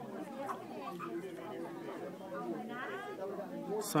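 Faint, indistinct background chatter of other people talking, steady and well below the level of a close voice.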